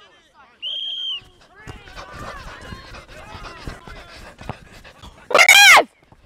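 A referee's whistle gives one short, steady blast about half a second in, restarting play. Players' voices call across the pitch, and near the end a single loud, high-pitched yell is the loudest sound.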